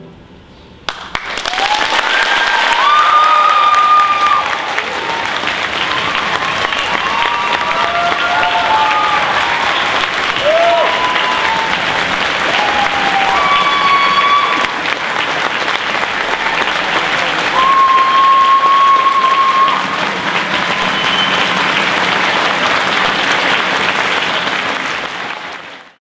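Concert audience applause breaking out about a second in, as the orchestra's final chord dies away, with shouts and whoops of cheering over it; it runs on and cuts off at the very end.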